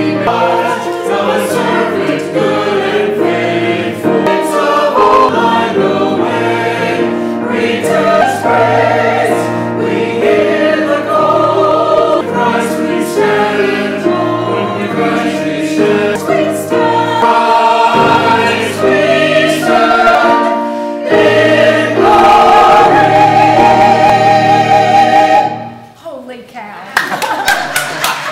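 Church choir singing, ending on a long held chord with vibrato that stops just before the end.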